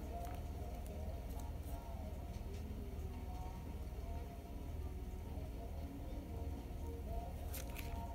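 Soft background music playing quietly, with a few faint rustles of small oracle cards being fanned out and drawn by hand.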